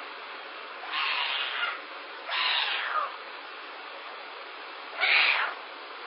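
A young animal calling three times, with raspy, noisy cries that fall in pitch, each under a second long, about a second, two and a half seconds and five seconds in.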